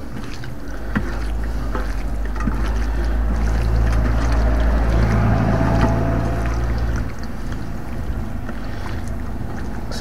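A low motor rumble with a steady hum swells about two and a half seconds in and falls away around seven seconds, over the faint wet sounds of hands tossing raw swordfish pieces on a steel platter.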